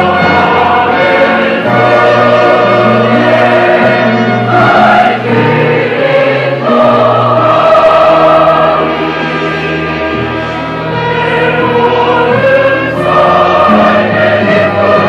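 A choir singing in long, held chords.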